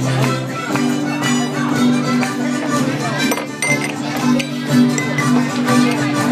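Small Irish folk band with harmonica and acoustic guitar playing a lively jig, sustained melody notes over a steady, even strummed rhythm.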